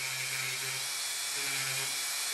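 Handheld rotary tool running at a steady pitch, its spinning disc attachment grinding potting compound off the back of a tire pressure sensor circuit board.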